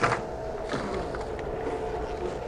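Motorized projector screen lowering, its electric motor running with a steady hum.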